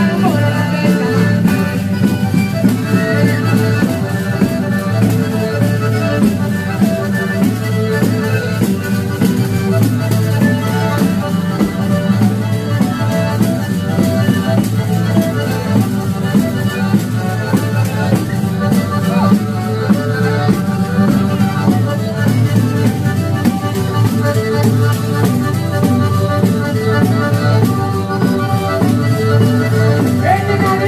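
Live pizzica folk music in an instrumental passage: accordion and fiddle playing the melody over a fast, steady tambourine beat.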